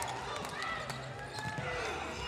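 Faint ambience of an indoor futsal arena between lines of commentary: distant shouting voices over a steady background with some court noise.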